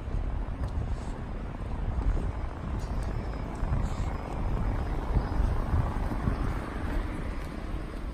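Outdoor noise: a steady low rumble with a broad swell a little past the middle.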